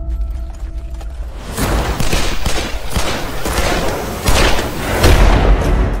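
Trailer music with a sustained low note, then from about one and a half seconds in a fusillade: many gunshots in quick succession from several guns, over a low rumble, heaviest near the end.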